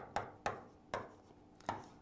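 Pen strokes tapping against a writing board as figures are written: a handful of short, sharp taps, roughly one every half second.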